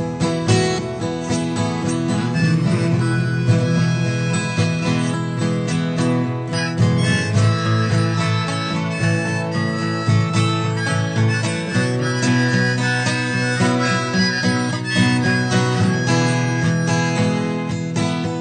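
Instrumental break of a song: a harmonica lead over strummed acoustic guitar, with no singing.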